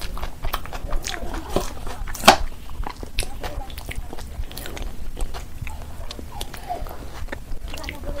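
Close-up wet chewing and mouth smacking from eating rice and curry by hand, with many short irregular clicks; the loudest, a sharp smack, comes about two seconds in.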